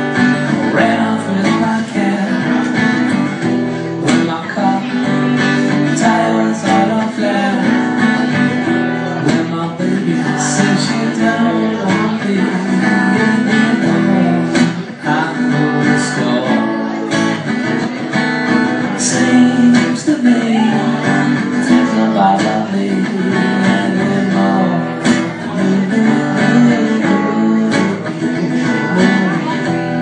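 Acoustic guitar strummed steadily in a live solo performance of an Americana rock song.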